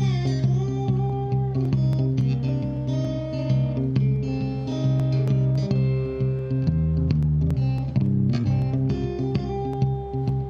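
Solo electric slide guitar: a Fender Bullet played with a bottleneck slide, fingerpicked so that a steady low bass note rings under a melody whose notes glide between pitches.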